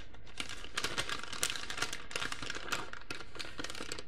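Crinkly packaging being handled and opened by hand to get at a small skein of yarn: a run of irregular sharp crackles and clicks.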